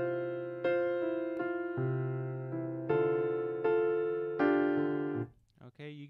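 Virtual piano playing back a recorded MIDI chord part with the sustain pedal held down throughout. The notes ring on into one another, a blur he calls "a bit of mush". The playback cuts off suddenly about five seconds in, and a man starts talking just before the end.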